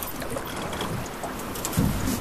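River water moving around a drift boat, with steady wind noise on the microphone and a short low bump near the end.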